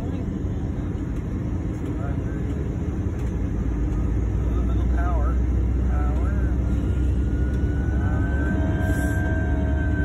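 Aircraft engines heard from inside the passenger cabin: a steady low rumble that grows louder about four seconds in, with a whine building from about seven seconds on.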